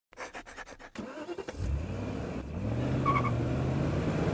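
A few quick clicks, then a car engine starts about a second and a half in and runs steadily, its pitch stepping up slightly a second later, with a short high beep near the end.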